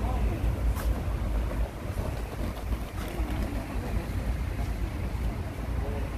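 Steady low rumble of noise on the phone's microphone, with faint voices in the background and a couple of light clicks.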